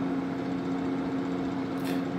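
A steady machine hum made of several steady tones, like a motor or fan running. A brief hiss comes near the end.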